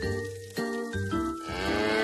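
Cartoon background music in short steady notes; about one and a half seconds in, a long cartoon moo comes in over it, rising and then falling in pitch.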